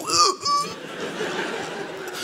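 A short vocal sound, then a theatre audience laughing steadily.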